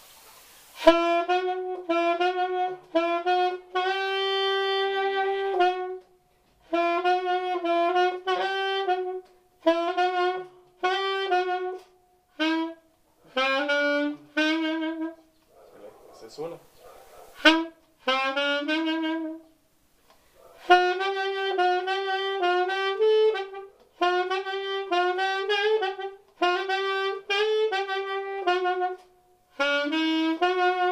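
Solo saxophone playing a huapango melody: phrases of quick notes separated by short pauses, with breath noise in a longer pause about halfway through.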